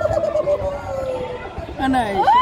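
A person's voice making a warbling, trilling sound, then holding one long, slowly falling note.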